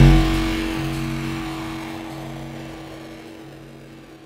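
Background music closing out: a held chord with a low note repeating about once a second, fading out steadily.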